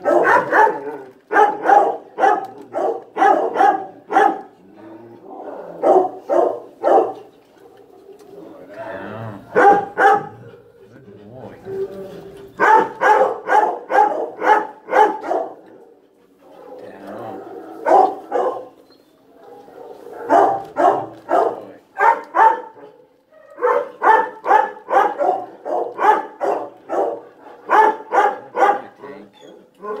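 Dog barking in rapid runs of several sharp barks, with short pauses between the runs.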